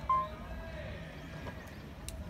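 Ballplayers' shouted calls across the field: one short, high, held shout just after the start, then fainter calls.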